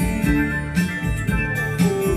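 Live instrumental acoustic guitar music, the guitar played flat across the lap with a slide, over a steady low beat about twice a second.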